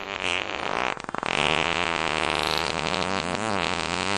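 A long, unbroken comedic fart sound effect, buzzing with a wavering pitch and a rapid flutter about a second in, drawn out far beyond a real fart.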